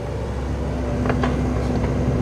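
A machine's engine running steadily with a low hum, with a few faint clicks about a second in.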